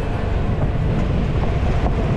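Motorcycle riding at road speed: wind rushing and buffeting over the camera microphone, with engine and road noise underneath.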